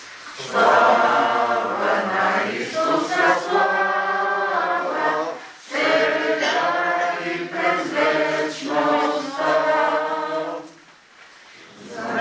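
A group of voices singing unaccompanied during a church prayer meeting, in two long phrases with a short break between them and a pause near the end.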